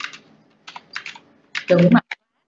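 Computer keyboard typing: a few scattered keystrokes over the first second and a half, followed by a short spoken reply near the end.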